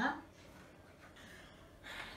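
A woman's voice trails off at the start. After that there is a faint, quiet stretch of room tone, and her voice returns near the end.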